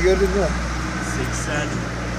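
A man says a count aloud at the start, then a steady low mechanical hum with a few faint clinks of small 5- and 10-kuruş coins being handled.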